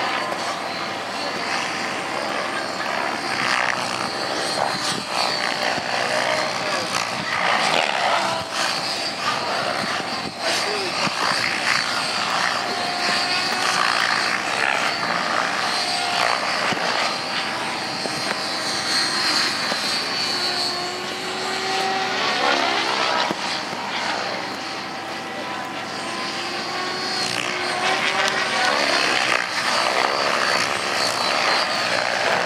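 Radio-control helicopter flying 3D aerobatics: the whine of its rotor and motor rises and falls in pitch as it swoops, flips and passes back and forth.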